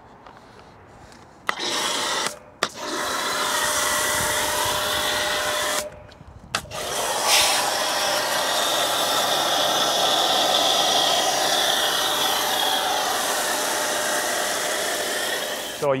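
Pressure washer spraying snow foam through a foam cannon onto a car wheel: a steady hiss of spray over the running pump, triggered in a short burst about a second and a half in, then a longer burst, a brief pause, and a long continuous spray that stops just before the end.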